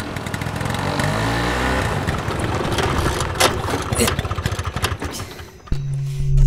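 Small engine of a motorcycle-based cargo tricycle running as it rolls up and stops, with a couple of sharp clicks midway. The engine goes quiet about five and a half seconds in, and a low steady music drone starts just after.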